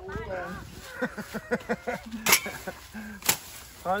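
People talking, with two sharp chops about a second apart in the second half: a machete striking cassava stems.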